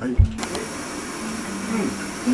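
A low thump, then a steady hiss from an aluminium kettle steaming on a lit portable gas burner, starting about half a second in.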